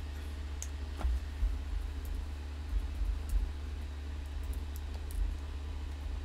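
A few scattered computer keyboard keystrokes, faint and irregular, over a steady low hum.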